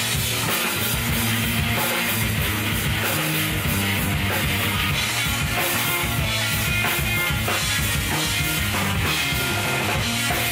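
Live rock band playing: two electric guitars over a full drum kit, at a steady full level.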